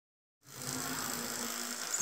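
Steady background hiss with a faint low hum, starting suddenly about half a second in, and a short click at the very end.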